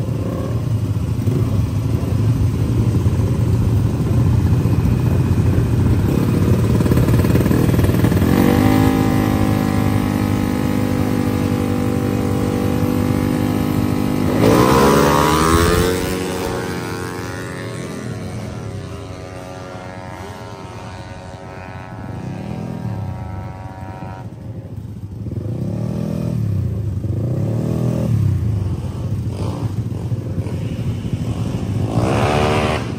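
Tuned drag-racing scooter engines at the start line: one is held at steady high revs for several seconds, then launches about halfway through with a sharp rise in pitch, the loudest moment, and fades as it pulls away. Near the end another scooter engine is blipped in several short revs that rise and fall.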